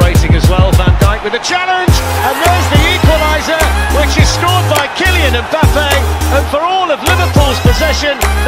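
Hip-hop backing music with deep bass: a fast roll of falling drum hits for the first second or so, then a vocal line over long, deep bass notes.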